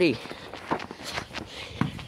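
Footsteps on snow-covered rocky ground: a few uneven steps and scuffs as someone scrambles along a slope.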